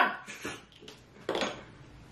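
Close-miked eating sounds of cooked Dungeness crab being picked apart by hand: light clicks of shell, with one brief louder sound a little over a second in.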